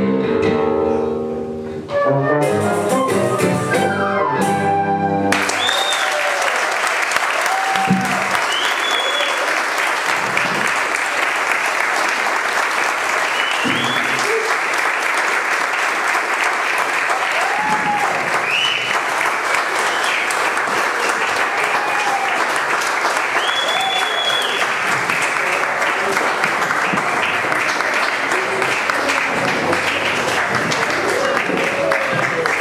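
A choro ensemble with tuba and guitars plays the last bars of a piece and ends on a held chord about five seconds in. Loud, sustained audience applause follows, with whistles and cheers.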